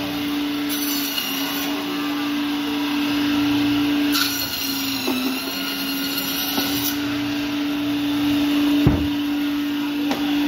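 Electric band saw running with a steady motor hum while its blade cuts through a large catla fish. The hum dips briefly about halfway through. A single thump comes near the end.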